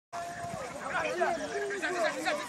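Several voices calling and shouting over one another on an open football pitch, in an unclear language. The sound opens with a split second of dropout.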